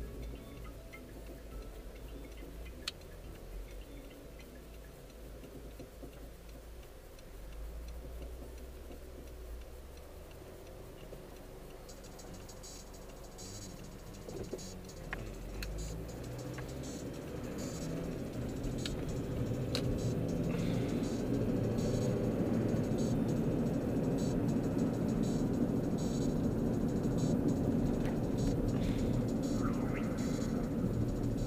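Car interior noise: low engine and road rumble, quiet while the car waits at the intersection, then growing steadily louder about halfway through as it pulls away and picks up speed.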